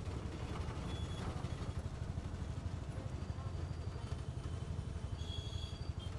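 Small engine of an auto-rickshaw running on the move, a steady, fast-pulsing low rumble with road noise, heard from on board. A faint high tone sounds briefly near the end.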